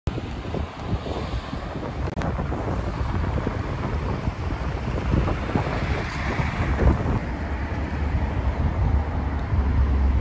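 Wind buffeting the microphone with a low rumble, over road traffic passing at an intersection; a vehicle's noise swells up and fades about six seconds in.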